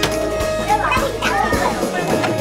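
Music from a button-pressing rhythm arcade game, with children's voices over it.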